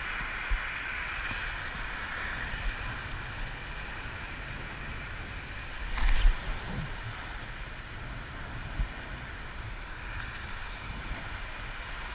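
Steady wash of sea water on a rocky shore with a low rumble of wind on the microphone. A brief knock about halfway through.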